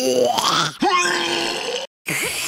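A young cartoon pig's wordless noise of disgust at being offered cucumber. It is a rising sound, then a second one held on one note for about a second that cuts off abruptly.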